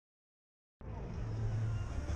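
Dead silence, then about a second in, outdoor street ambience cuts in abruptly: a steady low rumble with a faint hiss of town background noise above it.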